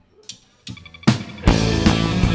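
A live rock band of electric guitar, bass and drum kit starting a song: a few separate opening hits, then the full band comes in loudly about one and a half seconds in.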